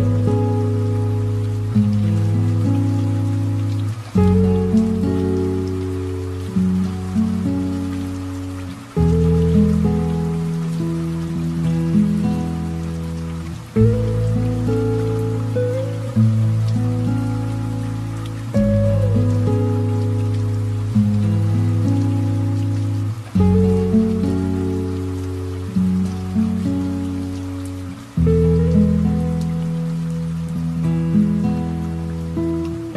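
Slow piano music, each chord struck and left to fade with a new one about every five seconds, over a steady patter of light rain.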